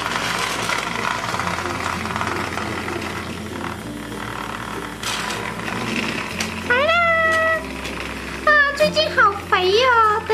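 Small battery motor of a Zuru Hamsters toy hamster whirring as it rolls a toy shopping cart along the plastic track, over soft background music with a slow bass line. From about seven seconds in come several high, gliding squeaks, louder than the rest.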